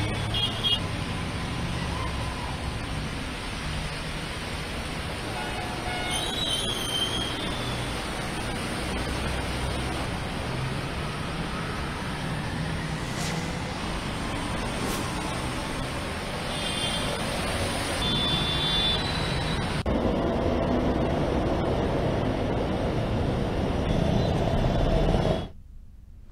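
Road traffic driving through flooded streets: a steady wash of engine and tyre-in-water noise with low rumble, and brief horn honks a few times.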